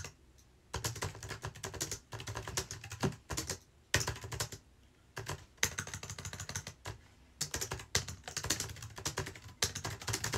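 Fast typing on a computer keyboard: quick runs of key clicks broken by short pauses every second or two.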